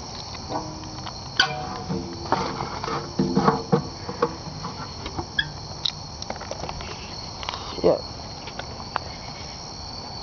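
Crickets chirping steadily in a night-time chorus, with scattered close knocks and handling sounds over it.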